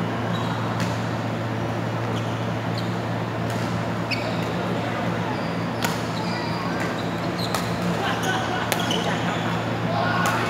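Badminton rackets striking a shuttlecock: sharp, single cracks a second or so apart, most of them in the second half as a rally is played, with distant voices and a steady low hum in a large hall.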